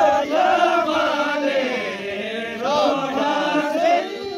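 A group of voices singing a Kinnauri folk song together, holding long lines that rise and fall in pitch.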